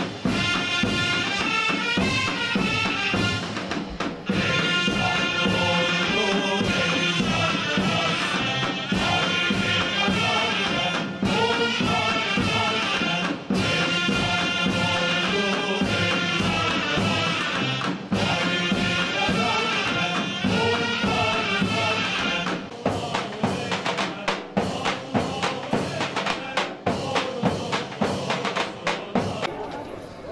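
Ottoman mehter military band playing a march: a loud, piercing wind-instrument melody over steady drum beats. About 23 seconds in, the melody stops and only the drums carry on, beating unevenly.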